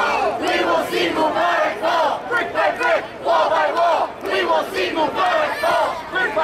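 Crowd of protesters chanting a slogan together in unison, many voices shouting in a steady repeated rhythm.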